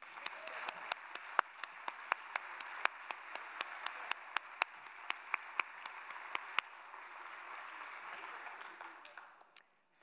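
Audience applauding, with sharper, closer hand claps about three a second standing out over the crowd until about six and a half seconds in; the applause dies away near the end.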